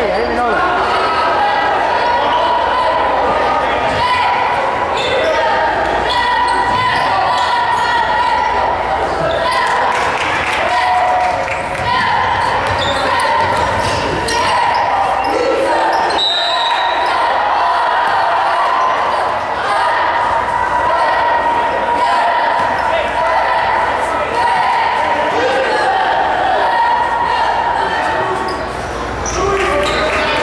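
Basketball game in a gymnasium: a ball bouncing on the hardwood court under steady spectator chatter that echoes around the hall. A short, high referee's whistle sounds about halfway through.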